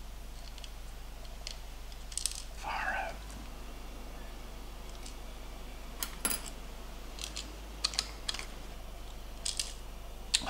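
A handful of short, sharp plastic clicks and light taps as the gimbal assembly and small tools are handled and fitted into a DJI Mavic Pro's opened plastic body. The loudest clicks come about six and eight seconds in.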